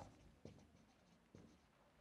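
Near silence with faint strokes of a marker writing on a whiteboard, with two slightly stronger marks, one about half a second in and one near a second and a half.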